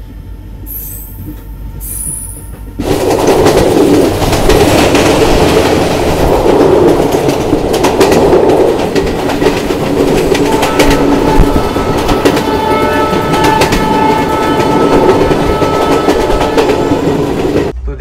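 Passenger train coaches running on the rails, heard from an open coach doorway. The rolling noise is moderate at first, then becomes a much louder, steady rush of wheels and wind from about three seconds in. A thin high tone sounds on and off in the second half.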